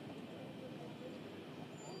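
Faint field ambience at a football pitch: a steady low hiss with distant, indistinct voices of players, and a couple of brief faint high chirps.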